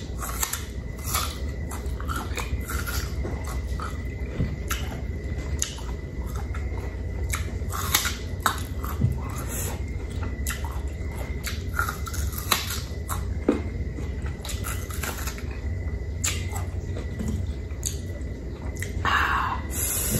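Close-miked eating sounds of a person biting and chewing Indian mango slices: irregular clicks and mouth smacks throughout, over a steady low hum.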